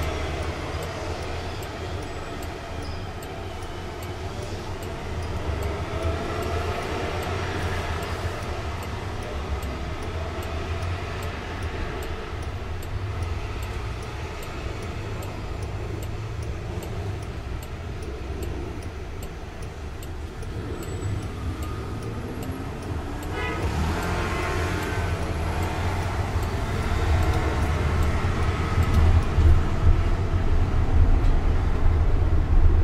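Traffic noise heard from inside the cabin of an electric car waiting at a red light: a steady low rumble with passing vehicles. In the last third the car pulls away and the road noise grows louder.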